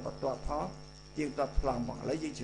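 A man speaking Khmer in short phrases, over a steady high-pitched whine and a low electrical hum.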